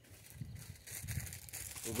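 Crinkling of a plastic instant-noodle packet being handled, getting busier about a second in.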